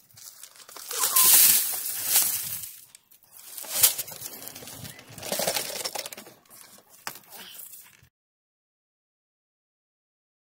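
Gravel and rocks poured from a plastic container onto a classifier screen in a bucket for wet classifying, rattling and clinking in several noisy pours. The sound cuts off suddenly about eight seconds in.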